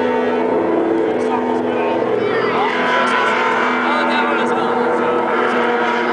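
A live rock band's sustained droning sound through the stage PA: held tones that stay level without a beat, with crowd voices underneath.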